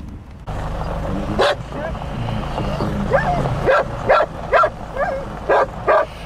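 A hooded crow calling in a run of short caws, about two a second, answering calls imitated to it, over the steady low hum of an idling car engine.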